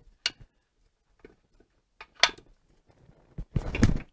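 Metal parts of a Saginaw manual transmission clicking and knocking as the case is slid down over the gear stack. There is a sharp click a little over two seconds in, and heavier knocking and rubbing near the end.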